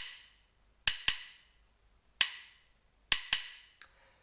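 Wooden drumsticks tapping out a syncopated rhythm in sharp, short-ringing clicks: a quick pair of strikes, a single strike about a second later, then another quick pair. This is the rhythm of the left-hand accompaniment pattern for the song.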